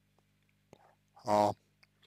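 A man's short, drawn-out hesitation vowel ('а') just past the middle, over a steady low electrical hum.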